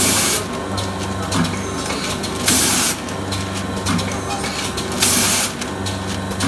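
Rotary pouch packing machine running with a steady hum and light ticks, and three loud, short bursts of compressed-air hiss about two and a half seconds apart from its pneumatic valves venting each cycle.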